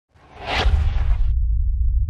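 Whoosh sound effect over a deep rumble for an animated logo intro. The whoosh swells quickly and cuts off suddenly a little past the middle, leaving the low rumble going.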